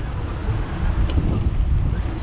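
Wind buffeting the camera's microphone while a bicycle is ridden along a road: a steady low rumble.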